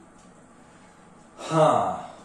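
Quiet room tone, then about a second and a half in a man says a drawn-out "haa" that falls in pitch.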